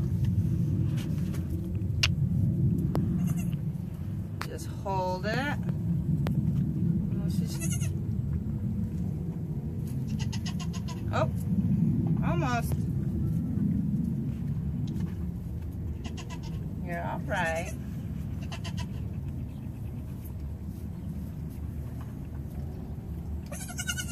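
A young goat kid bleating several times, in short calls a few seconds apart, while it is held for bottle feeding and has not yet latched onto the bottle's nipple.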